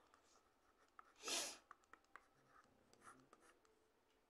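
Faint scratching and light taps of a pen writing on a tablet surface, with a short hiss about a second in.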